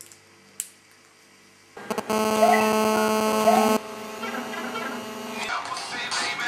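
A sharp click, then about two seconds in a loud, steady buzzing tone that lasts about two seconds before dropping to a quieter hum.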